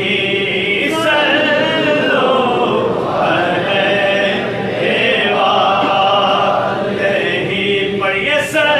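Men's voices chanting a naat together without instruments, in long drawn-out phrases that rise and fall in pitch.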